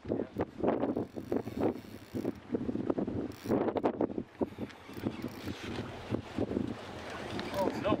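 Indistinct voices talking in short bursts, with wind on the microphone and a faint steady low hum.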